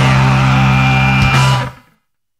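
Punk rock song ending on a held electric guitar chord that rings steadily, then dies away quickly to silence near the end.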